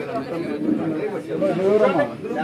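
Crowd chatter: several people talking at once in overlapping voices, with no single speaker standing out.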